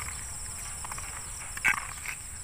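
Steady high-pitched insect chorus from the grassy field, with one short sharp sound near the end.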